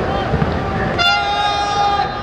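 A horn blown in a football stadium: one long, steady, flat note starts about a second in, over the noise of the ground.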